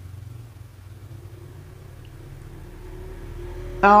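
A low, steady rumble with a faint hum, growing slightly louder toward the end; a woman's voice begins at the very end.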